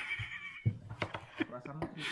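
A man's brief high-pitched squealing vocal sound that trails off about half a second in, followed by a light knock and low, faint voices.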